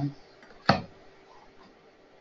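A single click of a computer mouse button, a little under a second in.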